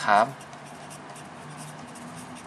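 Felt-tip marker writing on paper: a faint, soft scratching of the tip across the sheet as words are written.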